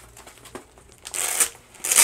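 Velcro hook-and-loop straps on a paintball harness belt being pulled apart in two short rips, one about a second in and one near the end.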